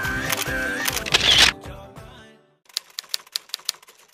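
A background song swells loudly and fades out in the first two seconds. After a brief silence, a typewriter sound effect clicks out a run of about a dozen quick keystrokes as on-screen text types itself.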